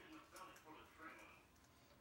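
Near silence with faint, low talk in the first second or so, fading out.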